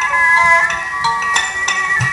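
Instrumental likay stage music: a held, sustained melody with sharp metallic clinks struck over it.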